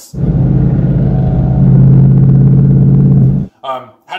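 A super loud car exhaust held at one steady low note with a fast pulsing drone, running for about three and a half seconds and then cutting off suddenly.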